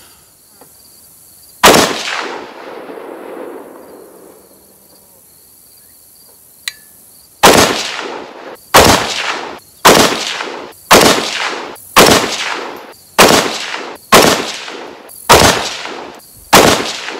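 Bear Creek Arsenal AR-10 semi-automatic rifle firing Tula .308 Winchester ammunition: one shot about two seconds in, a pause, then eight shots at about one a second, each with an echoing tail; every round cycles without a single malfunction. Insects trill steadily in the background.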